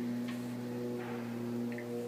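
A steady low hum with a few steady overtones, unchanging in pitch, under faint room noise.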